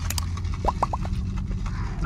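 Steady low rumble of a moving car's cabin. A couple of clicks come at the start, then three short squeaky chirps about two-thirds of a second in, from a cup of lemonade being sipped through its straw.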